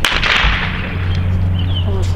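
A single blank-pistol shot at the start, a sharp crack that echoes away over about half a second. It is fired while the dog heels, as the gunfire test of the obedience routine.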